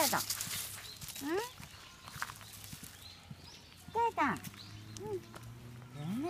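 A corgi whining in short yelps that rise and fall in pitch, a few times, the loudest pair about four seconds in.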